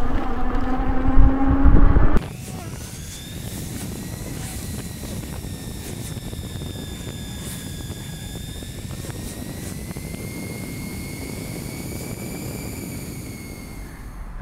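Bee Challenger electric bike ridden at full throttle: a thin electric-motor whine that drifts slowly up and down in pitch over a steady rush of tyres and wind on the microphone. For about the first two seconds a much louder wind rumble covers it, then drops away suddenly.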